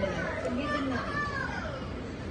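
Background talk from people nearby, with a child's voice among them.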